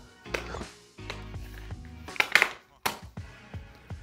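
Soft background music, with a few short clicks and knocks from a plastic phone case being handled.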